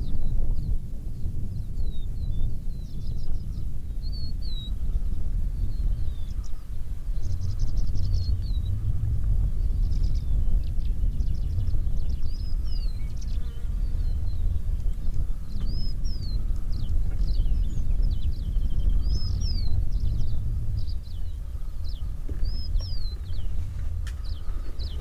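An uneven low rumble of wind on the microphone. Over it, birds chirp and whistle throughout in short rising and falling calls, and insects buzz faintly at times.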